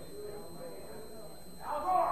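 Faint, indistinct voices murmuring in a hall, with a short burst of noise near the end.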